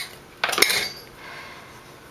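Metal screw lid of a glass jar of salt set down on a table: a brief clatter about half a second in, then faint handling of the open glass jar.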